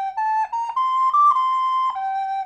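Soprano recorder playing a hymn melody in separate tongued notes. The line climbs step by step to its highest note about halfway through, steps back down one note, then drops to a held lower note near the end.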